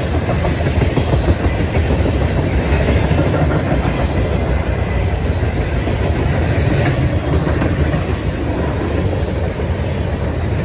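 Freight cars of a long mixed train (tank cars, covered hoppers and boxcars) rolling past at speed close by: loud, steady noise of steel wheels on rail.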